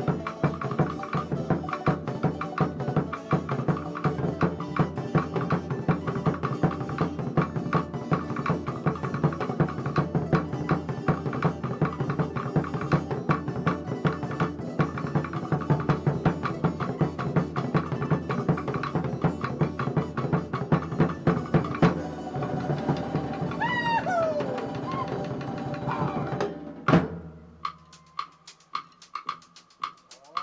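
Fast Tahitian drum music with a dense, rapid rolling rhythm of drum strokes. A brief gliding high call sounds over the drums shortly before the end, and the drumming closes with a single loud stroke about a second before the end.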